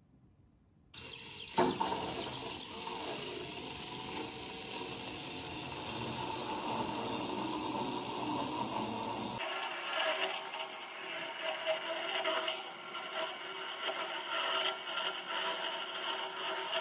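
Small homemade electric blender, a little electric motor with a wire stirrer, starts about a second in and spins a slurry of sand and graphite in a glass jar. It runs with a high whine that rises as it comes up to speed and then holds steady. About nine seconds in the sound changes abruptly and becomes quieter.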